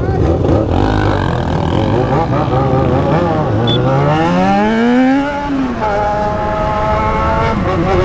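Motorcycle engine pulling away from a stop: about three seconds in it revs up with a rising pitch for two to three seconds, drops at a gear change, then runs at a steady pitch.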